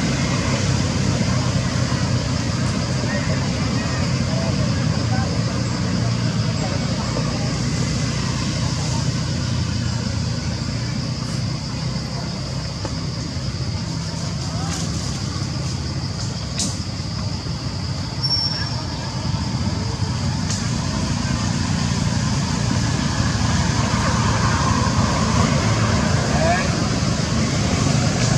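Steady low outdoor rumble, like road traffic, with faint voices mixed in. A few faint clicks and a brief high chirp come in the second half.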